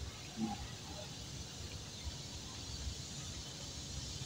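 Faint outdoor background: a steady low rumble and a steady high hiss, with one brief low hum, like a short voice sound, about half a second in.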